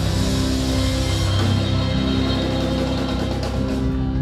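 Live rock band playing loudly on electric guitar, bass guitar and drum kit, with steady held chords over cymbal wash.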